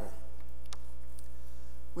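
Steady electrical mains hum, a low hum with a ladder of evenly spaced buzzing overtones above it, with one faint tick under a second in.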